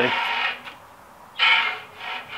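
Bicycle wheel spun by hand in a truing stand, its rim scrubbing against the stand's gauge arm in three short scraping rubs as the out-of-true spot comes round: the sign the wheel still has a wobble to be trued out.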